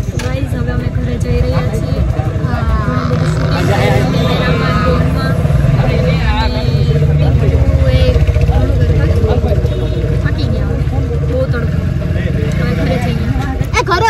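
Steady low road and engine rumble inside a moving car's cabin, with women's voices talking over it.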